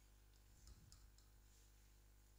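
Near silence, with a few faint clicks of a stylus tapping and writing on a smartboard's touchscreen.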